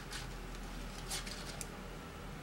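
Faint ticks of metal circular knitting needles and the brush of wool yarn as stitches are knitted, a few light clicks at the start and again past the middle.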